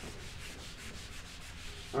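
Felt whiteboard eraser rubbing across a whiteboard in quick back-and-forth strokes, wiping off marker writing.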